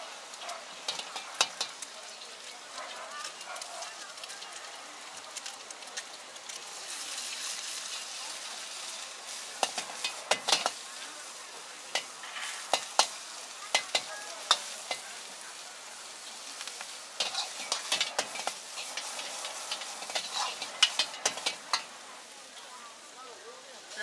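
Food frying in a wok over a gas flame with a steady sizzle. A metal ladle clanks and scrapes against the wok in repeated clusters as the cook stir-fries.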